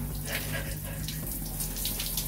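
Water pouring steadily from an overhead rain showerhead and splashing onto a person's body and the ground below. The shower is fed straight from the street supply, not from a water tank.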